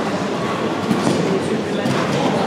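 Steady indoor-arena background noise with indistinct voices talking.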